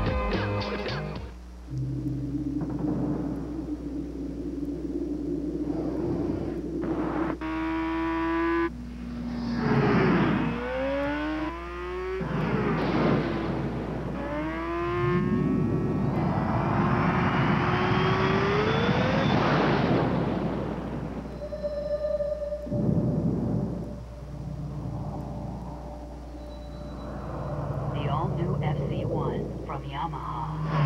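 Sport motorcycle engine revving hard several times, each rev climbing in pitch, the longest rising for about four seconds midway, over background music.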